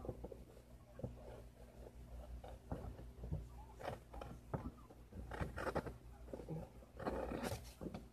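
A knife blade slicing through a sheet of paper in a sharpness test, heard as faint, irregular rasping strokes, several in a row, with the clearest a few seconds in and near the end.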